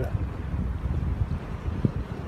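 Wind buffeting the microphone: a low rumble that rises and falls unevenly.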